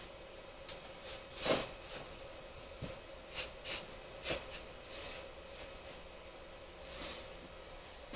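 A few short scrapes and taps as a wax candle is shaved with a knife and handled on a cardboard-covered table, over a faint steady hum.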